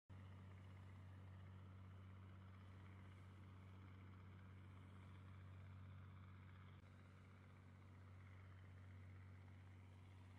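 Near silence: a faint, steady low hum with a little background hiss, which shifts slightly about seven seconds in.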